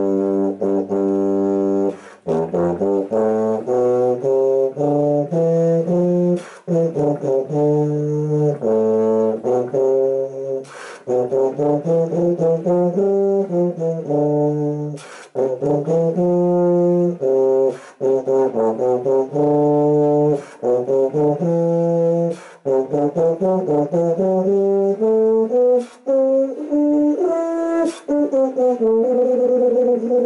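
Solo tuba playing a melodic passage from sheet music, with held and moving low notes in phrases broken by short gaps every few seconds.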